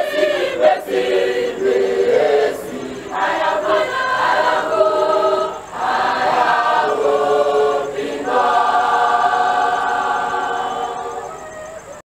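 A large mixed choir singing in harmony, moving through held chords and ending on one long sustained chord that fades away near the end.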